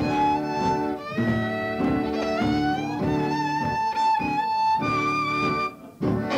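Fiddle tune played on violin with guitar accompaniment, the fiddle carrying the melody in sustained bowed notes. The music breaks off briefly just before the end.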